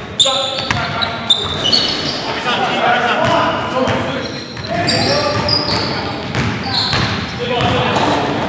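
Live pickup-style basketball game in a large gym: a basketball bouncing on the hardwood floor, many short high sneaker squeaks, and players' voices calling out.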